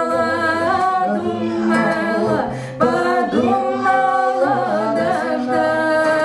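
Two women singing a Russian Romani folk song live, long held notes with vibrato, over acoustic guitar and a plucked bass line.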